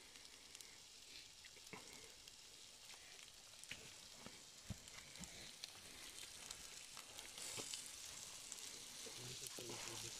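Diced meat sizzling faintly in a small frying pan over an open wood fire: a steady thin hiss with scattered small crackles, growing a little louder near the end.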